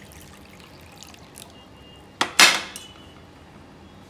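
Green tea poured faintly from a glass teapot into a glass cup, then, a little past halfway, a click and a sharp glass clink with a brief ring as the glass teapot is set down on the glass-topped table.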